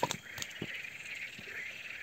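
Night chorus of frogs and insects calling steadily, with a few short clicks or knocks in the first second.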